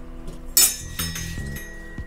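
Plastic deli containers clacking together as one is pulled from a stack: one sharp clack about half a second in, then a lighter knock about a second in.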